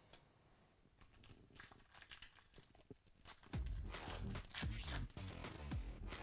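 Trading-card pack wrapper being torn open and crinkled by hand, in irregular crackles that start about a second in and grow louder after the middle.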